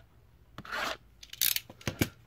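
A blade cutting through the cardboard of a trading-card blaster box: two short scraping strokes, then a small click near the end.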